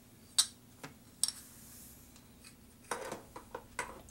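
Sharp clicks and knocks from handling a rubber jewelry mold at a wax injector: one loud click about half a second in, two lighter ones in the next second with a brief faint hiss after, then a quick run of lighter taps near the end.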